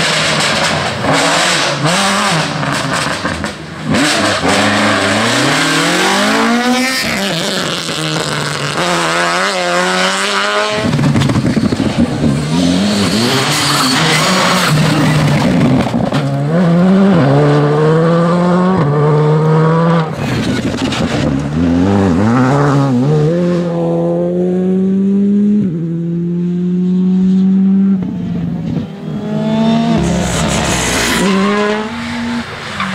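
Rally cars at full throttle in several passes. The engines rev hard, their pitch climbing and dropping again and again through gear changes and lifts.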